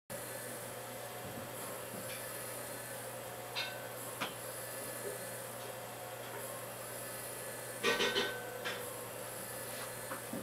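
Small electric motors spinning rotating LED displays: a steady low hum, with a couple of faint ticks and a brief rubbing burst about eight seconds in.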